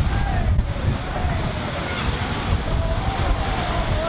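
Rough sea surging and breaking against a concrete seawall, with wind buffeting the microphone.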